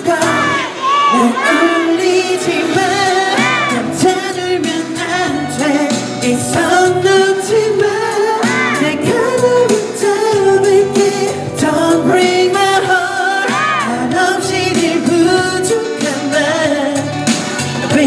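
A man singing live into a handheld microphone over pop backing music, his held notes wavering with vibrato.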